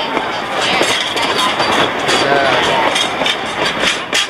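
Ride noise from a moving narrow-gauge train's passenger car: a steady rushing rumble of wheels on rail, with scattered clicks as the wheels run over the track.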